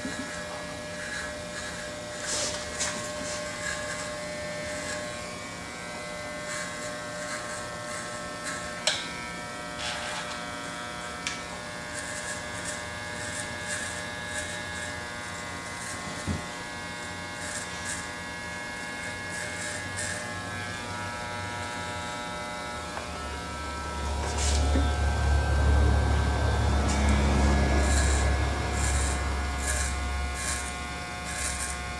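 Electric hair clippers running with a steady buzz while cutting hair, with scattered small clicks. About three-quarters of the way through the buzz grows louder and deeper.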